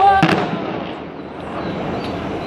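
A quick cluster of sharp explosive cracks from the tower demolition site just after the start, followed by a steady noisy wash, with crowd voices.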